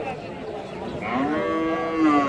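A young head of cattle in a tethered line gives one long moo that starts about halfway through, rises and then holds steady.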